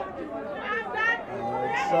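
Several people talking at once: party crowd chatter, with no single voice standing out.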